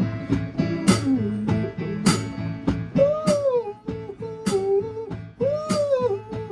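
Instrumental rock and roll music: an electric keyboard played in a steady rhythm. From about halfway, a lead line bends up and down in pitch over the chords.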